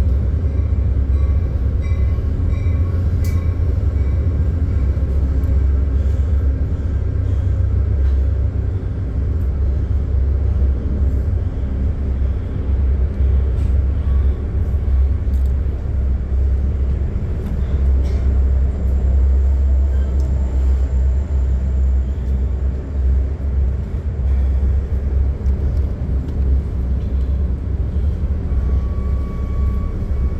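Metra commuter train rolling along the track, heard inside a Budd gallery coach: a steady, heavy low rumble of the car and its running gear, with a few faint clicks and thin high tones now and then.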